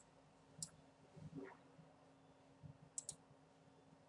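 Faint computer mouse clicks over near-silent room tone: one about half a second in, then a quick pair near three seconds.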